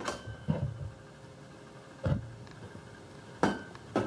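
A few scattered knocks and clinks, about four, over a faint steady hum.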